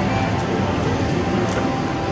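Casino floor din, with a video slot machine's electronic free-game music and reel-spin sounds playing over it and a few faint clicks.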